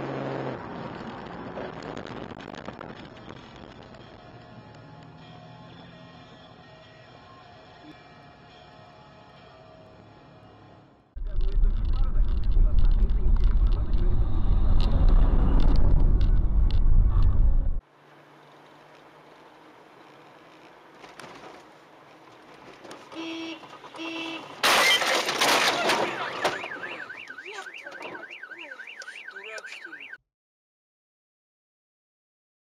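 Dashcam cabin and road noise across several clips: first steady and fairly quiet, then a loud low rumble while driving on a wet road in rain that cuts off suddenly. About 25 seconds in there is a sudden loud crash-like noise, followed near the end by a rapidly warbling car alarm.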